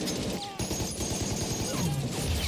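Battle gunfire from a war drama's soundtrack: rapid, continuous machine-gun and rifle fire in a night firefight.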